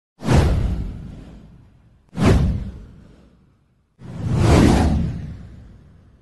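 Three whoosh sound effects of a title animation, about two seconds apart. The first two start sharply with a deep low end and fade away over a second or so. The third swells in more gradually before fading.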